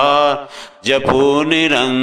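A Hindi devotional bhajan to Hanuman sung by a solo voice in a chanting style. One held line fades out about half a second in, and after a short gap the next line begins.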